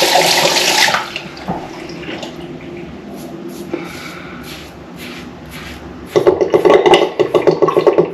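Tap water running into the sink, stopping about a second in. Then the scrape of a Rex Ambassador stainless-steel safety razor cutting lathered stubble, quiet strokes at first, then loud rapid strokes from about six seconds in.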